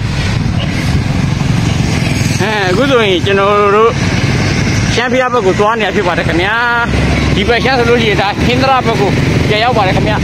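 Steady low rumble of road traffic, motorbike and truck engines running, with people talking over it in stretches from about two and a half seconds in onward.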